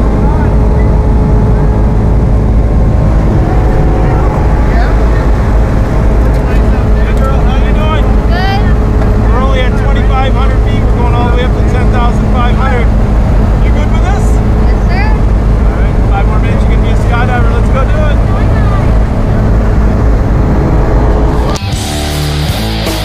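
Single-engine light aircraft's piston engine and propeller droning steadily, heard from inside the cabin during the climb to jump altitude, with voices raised over it in the middle stretch.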